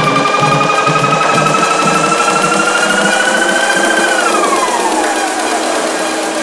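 Tech house mix in a breakdown with the kick and bass out. A synth tone rises slowly in pitch, then slides down from about four seconds in.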